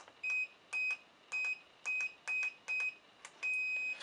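Electronic keypad of a fingerprint keypad door lock beeping as a code is entered: six short high beeps about two a second, each with a faint button click, then one longer beep near the end.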